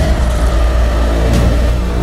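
Film trailer sound effects: a loud, steady deep rumble with a held tone above it that slides slightly lower during the first second.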